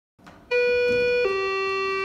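Two-note ding-dong chime: a higher note starts about half a second in, then a lower note takes over and rings on, fading.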